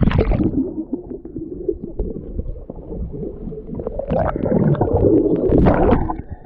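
Muffled underwater sound of a swimming pool heard through a submerged camera: low, irregular rumbling and gurgling of water stirred by swimmers. It grows louder and busier with sloshing and splashing in the last couple of seconds as the camera comes up toward the surface.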